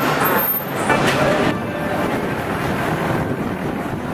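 Steady city street traffic noise, with a large bus's engine running close by in the later part.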